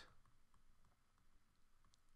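Near silence with a few faint, scattered clicks of a stylus tapping on a drawing tablet while handwriting.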